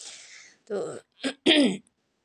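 A woman's voice: a short spoken word, then a brief throat clearing about one and a half seconds in.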